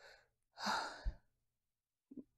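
A woman's audible sigh: one long breath out, starting about half a second in, with a soft low bump near its end.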